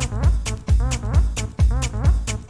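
Retro techno track playing in a DJ mix: a steady kick drum about twice a second, hi-hats between the kicks and a repeating synth riff that bends in pitch.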